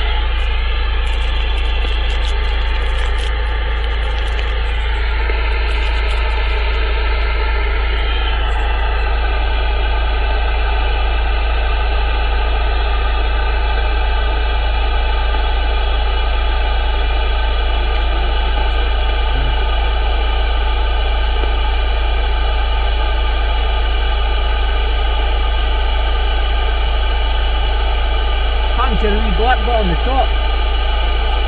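Open CB radio channel: steady receiver hiss with a strong low hum and several steady whistling tones, as the band is monitored for a reply to a call. A brief warbling voice comes through the noise near the end.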